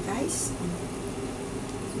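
Glass lid settling onto a frying pan, with a short scraping clink about a quarter-second in, over a low hum that comes and goes.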